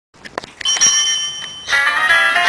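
Start of a game-show theme tune: a few short clicks, then a bell-like ringing tone held for about a second, giving way near the end to a melody.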